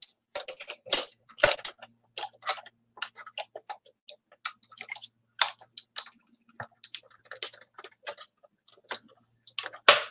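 Small hand-cranked die-cutting machine being cranked, its rollers pulling the cutting plates through with a run of irregular clicks, several a second, and a sharper click near the end.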